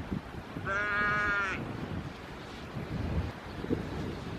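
A sheep bleats once, a steady call lasting about a second, over low wind rumble on the microphone.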